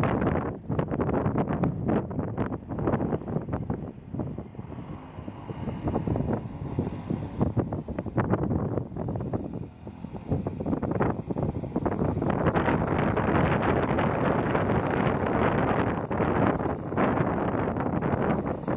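Wind buffeting the microphone in uneven gusts, growing steadier and heavier over the last third.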